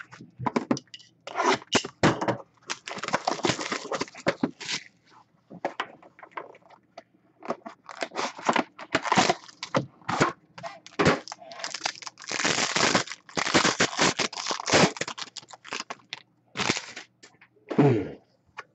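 Packaging crinkling and tearing in irregular bursts as a trading-card box is opened and its foil-wrapped pack is handled.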